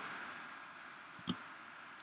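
Quiet room hiss with one short click about a second and a quarter in.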